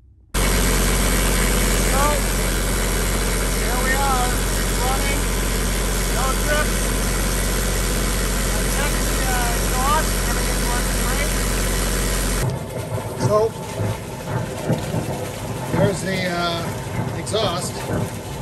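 12 kW Northern Lights diesel generator running steadily, heard close up beside its newly replaced raw water pump. About two-thirds of the way in, the sound changes to the generator's wet exhaust outlet spitting out water in irregular splashes, a sign that the new pump is moving plenty of cooling water.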